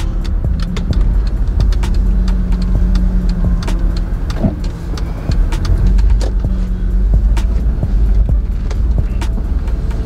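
A car driving, heard from inside the cabin: a steady low rumble of engine and road, with scattered short clicks.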